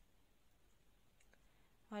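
Near silence with two faint clicks a little past the middle, from a crochet hook working chain stitches in thread.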